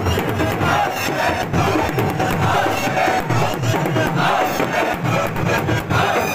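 Crowd of Shia mourners performing matam: hands striking chests and heads together in a steady beat, about two strokes a second, under loud massed chanting of a noha.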